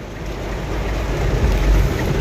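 Heavy rain on a car, heard from inside the cabin: a dense, even hiss of rain with a low rumble underneath, growing louder.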